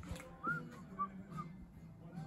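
Three short, soft whistled notes in quick succession, each rising and falling a little, over a faint steady low hum.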